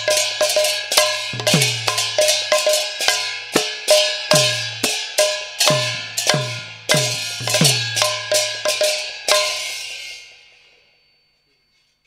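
Brass hand cymbals struck together in a steady run of two to three ringing clashes a second, each with a low thud beneath. The last clash, about nine seconds in, rings away to silence, ending the piece.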